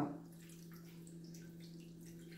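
Water poured from a small glass onto sliced calabresa sausage in an aluminium frying pan, a faint trickle and splash. A faint steady low hum runs underneath.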